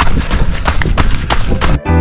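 Running footfalls on a dirt trail, about three a second, over rumbling wind noise on the microphone. Music cuts in suddenly near the end.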